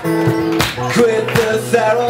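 Live acoustic song: an acoustic guitar strummed in a steady rhythm of sharp strokes, under male voices holding long sung notes.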